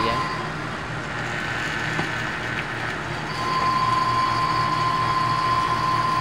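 Refrigerant vacuum pump running steadily, pulling a vacuum through the manifold gauge's low side to clear air out of an air-conditioning system after a leak. The sound grows louder and a steady high whine comes back about three seconds in.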